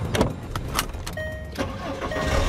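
A car door being opened and shut: a couple of sharp latch clicks and thuds. About a second in comes a short steady electronic tone from the car.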